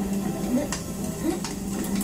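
Soundtrack of the animated projection show: the cartoon chef's short wordless voice sounds mixed with small clicking sound effects, played over the dining room's speakers.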